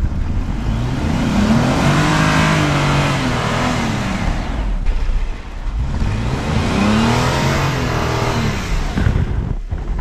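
Jeep Wrangler Rubicon engine revving up and back down twice, about three seconds each time, as the tyres churn and spin through deep snow.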